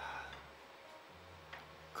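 Faint clicks of three-cushion billiard balls: a short knock at the start and a single sharp click about one and a half seconds in, over a low steady hum.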